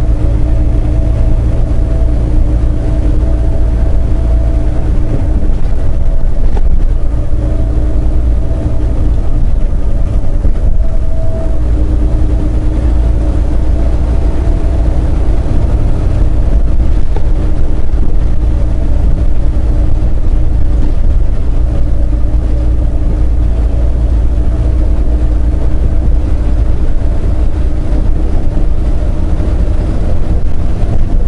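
Semi-truck's diesel engine and road noise heard inside the cab while cruising at highway speed: a steady, loud low rumble with an even engine hum over it.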